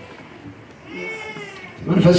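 Quiet, drawn-out voices praying aloud in a hall, with one wavering, plaintive voice rising about a second in. A man's amplified speaking voice comes in right at the end.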